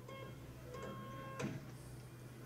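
Morse code tone keyed on and off: a short beep, then a longer one, cut off by a sharp click about one and a half seconds in.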